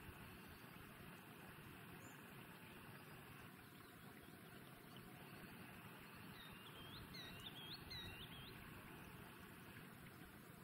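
Faint bird calls: a quick run of about eight short, high whistled notes, each flicking upward in pitch, lasting about two seconds past the middle, over a faint steady hiss.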